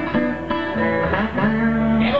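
Live blues played on electric guitar and resonator guitar in an instrumental passage between sung lines, with sustained notes that bend in pitch.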